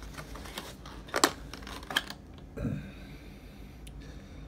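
Cardboard trading-card box and clear plastic card holder being handled: light rustling with a few sharp clicks, the loudest about a second in and another about two seconds in.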